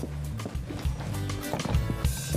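Background music with a steady bass line and a light percussive beat.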